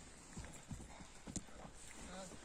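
Faint, scattered thuds and knocks of children playing football on a grass field, running and kicking the ball, a few irregular strokes over a quiet outdoor background.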